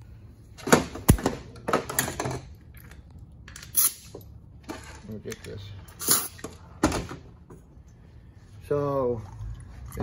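Metal parts of a 4L60E transmission's 1-2 accumulator clicking and knocking as they are handled, taken apart and set down on a metal workbench: a handful of sharp, irregular clicks and clatters.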